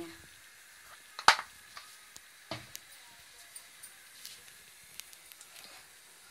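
Faint steady sizzle and hiss from cooking oil heating in a pan, with a scatter of sharp clicks and knocks of the pan and kitchen items; the loudest click comes about a second in.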